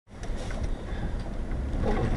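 Road and engine noise with the rumble of a semi-truck pulling a flatbed trailer passing close in the oncoming lane, growing louder as the truck comes alongside.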